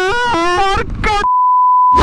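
A man's shouting voice, then a steady high-pitched censor bleep for about the last three-quarters of a second, masking a word.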